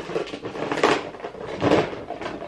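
Three short knocks and rustles from makeup items and containers being handled and set down.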